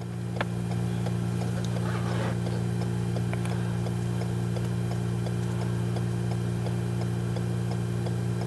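A vehicle idling with a steady low hum, with a light, regular ticking running over it.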